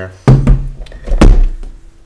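Steel desktop computer case thudding against a wooden tabletop as it is turned over and laid down: two loud thumps about a second apart.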